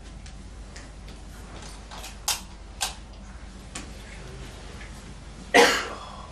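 Light switches clicking as the room lights are switched back on: a few sharp clicks, the two strongest about half a second apart near the middle. Near the end comes one short, loud burst of noise.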